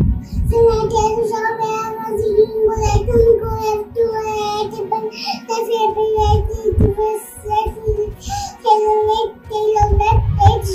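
A young girl's voice reciting the names of traffic signs in a quick sing-song chant, over background music.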